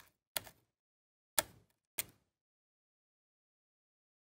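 Four short, sharp taps and clicks as small metal tweezers pinch and press the paper petals of a die-cut flower on a card; the third, about a second and a half in, is the loudest.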